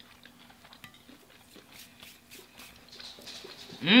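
Faint sounds of eating fried food, small scattered clicks and smacks of chewing, then near the end a loud closed-mouth 'hmm' of enjoyment that rises and falls in pitch.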